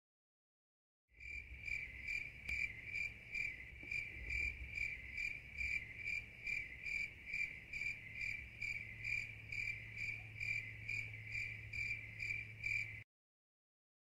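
Cricket chirping, a steady high chirp repeating about twice a second over a low hum. It starts about a second in out of dead silence and cuts off abruptly near the end, as a dubbed-in sound effect does.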